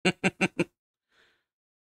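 A man laughing: four quick, evenly spaced 'ha' bursts in the first moment, then a faint breath about a second later.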